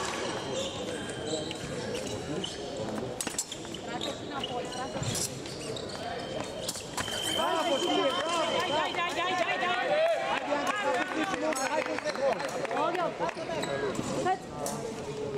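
Fencers' shoes squeaking on the hall floor during épée footwork, over voices in a large hall. A little past halfway a steady high electronic tone sounds for about two seconds: the épée scoring machine signalling a touch.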